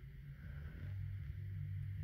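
Faint, steady low background hum, growing a little louder after the first half-second.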